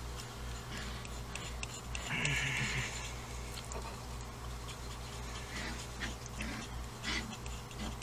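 Palette knife softly scraping and smearing thick mixed watercolor paint on a glass plate, in faint scattered strokes over a steady low hum.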